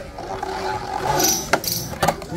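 Two metal Beyblade spinning tops whirring on a clear plastic stadium floor, with a sharp clack about one and a half seconds in as they collide and one is knocked out of the stadium.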